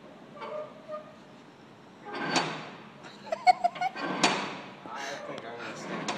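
Ring door knocker on a heavy metal door, rapped in a quick run of sharp clanks about halfway through, with hushed voices and laughter around it.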